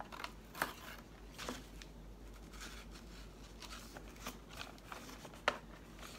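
Faint crinkling and a few sharp clicks from a plastic-and-cardboard toy blister pack being handled and pulled at by hand.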